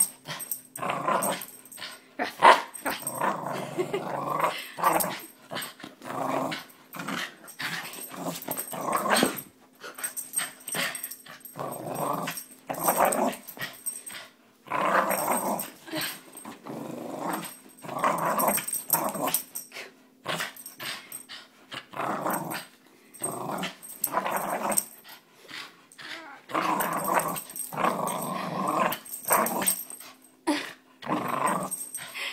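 A young Pit-Heeler mix dog growling in repeated bursts, each from a fraction of a second to a second or two with short breaks, while it pulls on a tug toy. These are play growls in a game of tug, not aggression.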